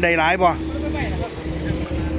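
A water pump's engine running steadily with an even, unchanging hum.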